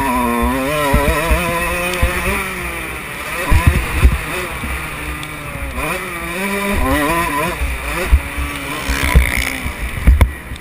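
Motocross dirt bike engine being ridden hard on the track, its pitch rising and falling over and over as the throttle opens and closes through turns and straights, heard close from an on-bike camera with low thuds on the microphone.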